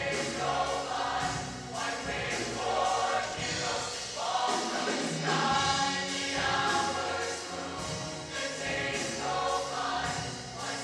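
Mixed-voice show choir singing in full harmony, with sustained chords that move from phrase to phrase.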